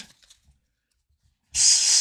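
A pause in speech: near silence for about a second and a half, then a person's voice starts again near the end, opening on a hissing 's'.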